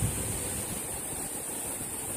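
Steady rushing outdoor noise with a low, fluctuating rumble of wind on the microphone, and a short bump right at the start.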